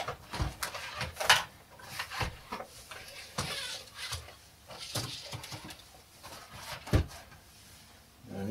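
Scattered knocks and clicks of an unpowered NAO humanoid robot's plastic shell and limbs as it is handled and folded into a crouching pose on a table, with a sharper knock about seven seconds in.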